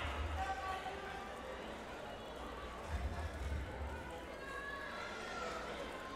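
Faint, indistinct chatter of voices over a low room rumble in a large gym hall, with no music playing.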